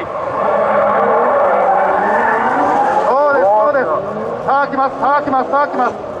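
Two drift cars sliding in tandem at high revs, engines running loud with tyre noise. After about three seconds the engine note rises and falls in quick repeated sweeps as the throttle is worked.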